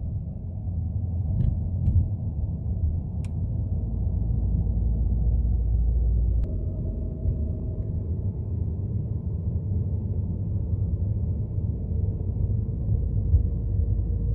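Car on the move at night, heard from inside the cabin: a steady low rumble of road and engine noise, with a few faint clicks.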